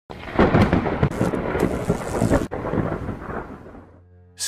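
A crackling thunderclap, loud for about two and a half seconds, then a rumble that fades out over the last second and a half.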